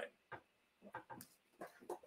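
Near silence: room tone with a few faint, very short sounds scattered through it.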